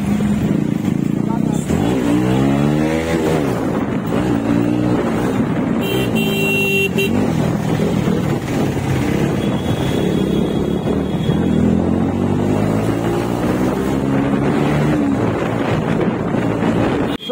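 Motorcycle engine running while being ridden, its pitch rising and falling repeatedly as it revs up and eases off. A vehicle horn sounds briefly about six seconds in.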